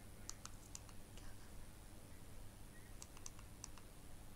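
Very quiet low hum and hiss, broken by two brief clusters of faint, sharp clicks: one just after the start and another about three seconds in.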